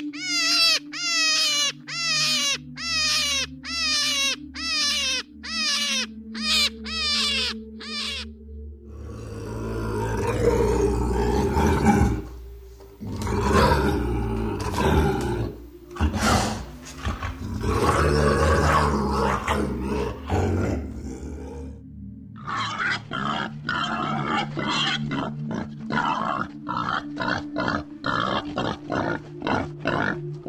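Three animal sounds over background music. First comes a run of about fourteen short calls in quick succession, each falling in pitch. Then a Eurasian lynx growls and yowls in long swelling stretches for about thirteen seconds, and after that wild boar grunt rapidly.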